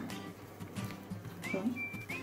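Quiet background music whose melody is a high, whistle-like line of short held notes.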